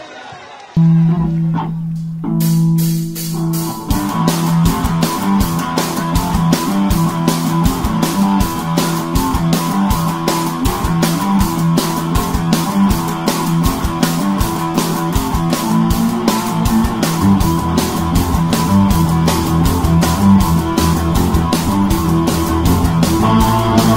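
Rock music: guitar chords held for the first few seconds, then the full band comes in with a fast, steady drum beat about four seconds in.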